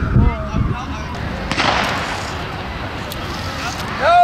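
Bystanders' voices over steady outdoor background noise, with a short burst of hiss about one and a half seconds in.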